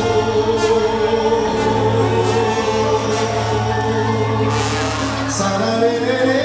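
Live Latin band playing with singing: one long note held over a steady bass.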